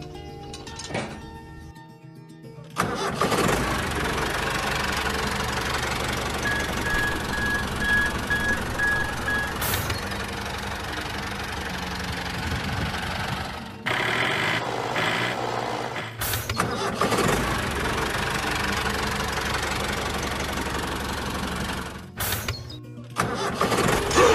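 A few seconds of background music, then a steady tractor engine sound that cuts off sharply and resumes three times.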